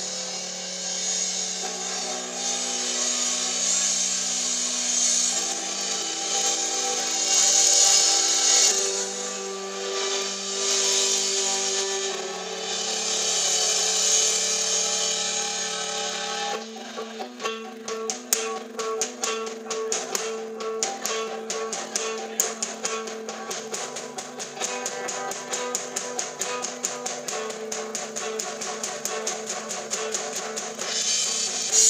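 Live rock band playing: electric guitar chords ringing out over drums. About sixteen seconds in, the music drops to a quieter, sparser passage of quick repeated notes.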